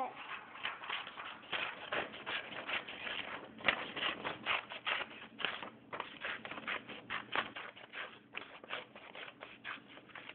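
Scissors snipping through printer paper in a quick, irregular run of cuts, with the sheet rustling as it is turned, and a short pause near the end.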